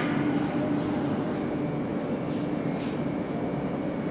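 Steady hum of an E235-1000 series electric train standing at the platform, with a faint steady high whine joining about a second and a half in.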